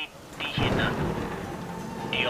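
Thunder rumbling over steady rain, the rumble swelling about half a second in.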